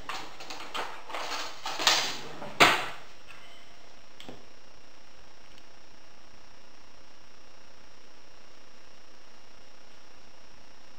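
Kitchen drawer pulled open and utensils rummaged through, then pushed shut with a sharp knock about two and a half seconds in. After that only faint, steady room noise.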